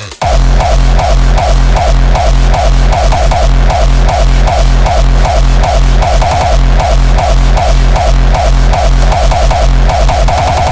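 Hardstyle track dropping in at full level: a heavy distorted kick and bass hit on every beat, about two and a half a second, right after a "This is it" vocal. The beats grow denser into a rapid fill near the end.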